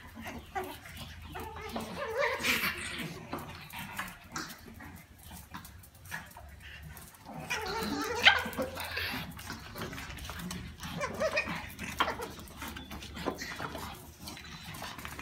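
A pack of small Brussels Griffon–type dogs playing roughly together, with short barks and whines coming in three louder bursts.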